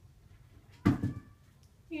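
A single sharp thump a little under a second in, with a brief ringing after it, against quiet room tone.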